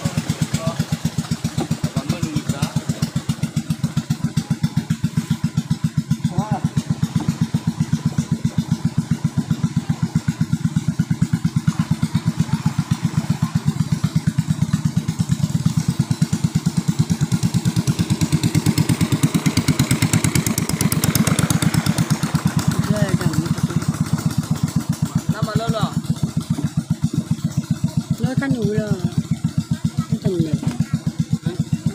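Engine of a small motorised wooden boat running steadily with an even, rapid pulse. Faint voices are heard over it near the start and toward the end.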